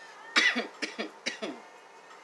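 A woman coughing several times in quick succession, the first cough the loudest.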